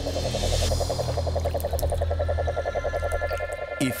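A frog trilling: a fast, even run of pulses held throughout, over a steady low hum.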